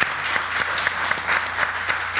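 Audience and panelists applauding, many hands clapping together.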